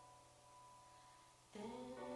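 Quiet live band music: a held note dies away, then a new chord comes in about three-quarters of the way through.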